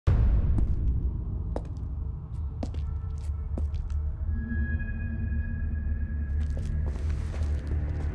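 Dark, ominous film score: a deep rumbling drone that opens with a sudden hit, with scattered sharp clicks and a held high tone coming in about halfway through.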